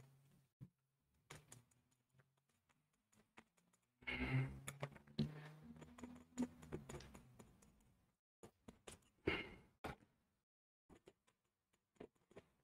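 Faint dabbing and scraping of paint on a stretched canvas, a scatter of small clicks and scratches, busiest from about 4 to 8 seconds in, where a low hum-like sound runs under them.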